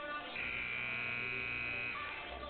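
Basketball arena buzzer sounding one steady, harsh buzz for about a second and a half, signaling the end of a timeout.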